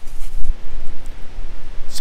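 Wind buffeting the microphone, a heavy low rumble, with a stronger gust about half a second in.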